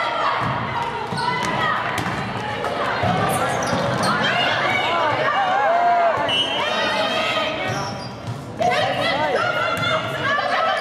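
Volleyball rally in a gym: sharp slaps of the ball being hit, with players' and spectators' voices calling out and cheering over them.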